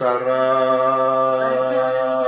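A man singing, holding one long, steady note.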